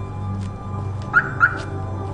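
Background music with a steady low drone. A little past halfway come two quick rising chirps about a quarter-second apart: the SUV's remote alarm chirping as it is unlocked.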